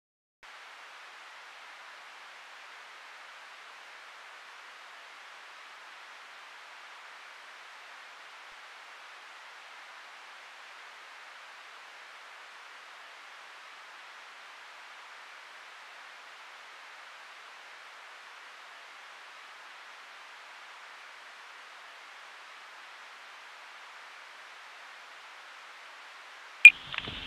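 Steady, even hiss of tape noise with no other sound in it, starting about half a second in.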